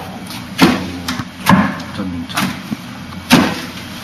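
Arms and hands striking the wooden arms and trunk of a Wing Chun wooden dummy: an irregular series of sharp wooden knocks, about six in four seconds, the hardest about half a second in and just after three seconds.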